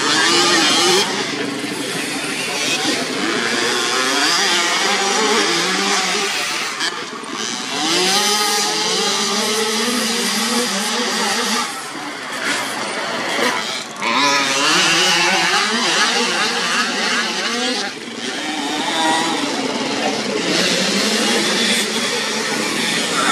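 Several small two-stroke youth motocross bikes running on a dirt track, their engines revving up and down as they accelerate and ease off, so the pitch keeps rising and falling. The sound breaks off suddenly a few times and picks up again.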